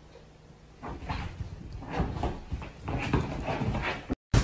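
A dog playing, a string of irregular short noises and scuffling that starts about a second in.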